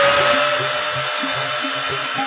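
Resistograph drill running, its thin needle bit boring into a wooden beam to measure the wood's resistance to penetration: a steady high whine over dense hiss, the motor already at full speed.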